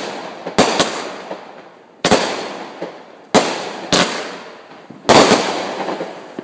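"Golden Fox" aerial firework going off overhead. It gives a series of sharp bangs, some in close pairs, about every second or so, each trailing off slowly.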